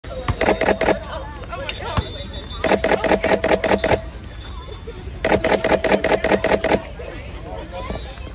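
Camera shutters firing in rapid bursts, about eight frames a second, three bursts in all, with a steady whir under each burst. Faint voices chatter in the gaps.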